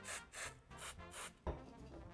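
A can of compressed air sprayed in short hissing spurts, about four in two seconds, to chill the chocolate and set it.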